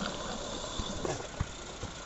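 Garden-scale model train running away along the track, its rumble fading, cut off abruptly about a second in; after that, quieter outdoor background with a few soft low knocks.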